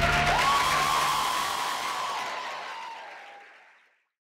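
Audience applauding as the dance music stops, with one long high call held over the clapping; it all fades away to silence near the end.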